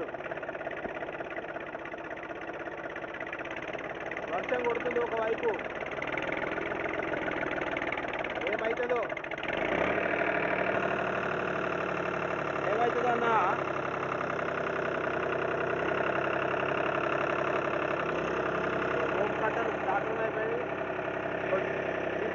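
An engine running steadily throughout, its note shifting about ten seconds in, with a man's voice heard over it now and then.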